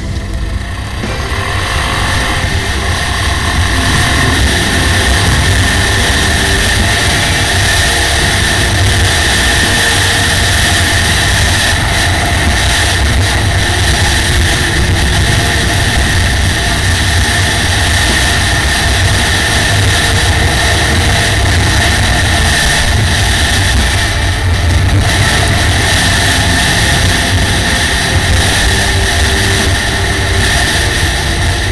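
Motorcycle riding at speed on a gravel road, heard from a helmet camera: a steady engine drone buried in heavy wind rush on the microphone. It builds over the first second or two, then holds.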